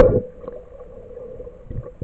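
Underwater audio from a camera held in a shallow river: a sharp knock right at the start, the loudest sound, then a steady hum with irregular low water rumbles.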